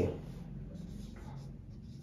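Marker pen writing on a whiteboard, faint.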